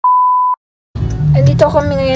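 Test-tone beep from a colour-bar transition effect: one steady high-pitched tone lasting about half a second that cuts off abruptly. A moment of silence follows, then background music and a voice begin.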